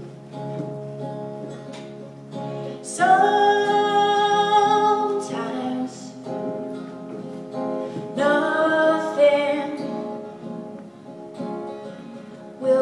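Live solo song: a woman singing slow, long-held notes over her own guitar accompaniment.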